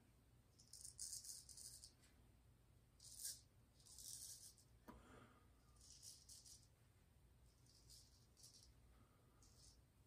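Gold Dollar Classic straight razor scraping through lathered stubble on the neck: a series of short, faint, scratchy strokes.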